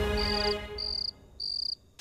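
Crickets chirping: three short, high pulsed chirps at even spacing, about one every 0.6 s. The tail of background music fades out under the first of them.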